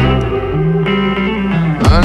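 Pop-rock band music with no singing: the beat drops out and a few steady notes are held, then the full band comes back in near the end.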